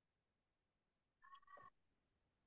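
Near silence on an open video call, broken about one and a half seconds in by one brief, faint, high-pitched sound.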